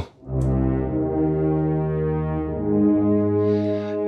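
Spitfire Audio Abbey Road One Grand Brass sampled horn ensemble with tuba, played from a keyboard low in its range: sustained low brass notes, changing notes about two and a half seconds in. The sound is royal and foreboding.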